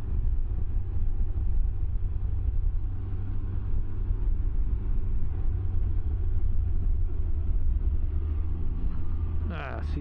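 Can-Am Ryker three-wheeler under way: a steady low rumble of engine and riding noise as it slows through a curve. A man's voice starts just before the end.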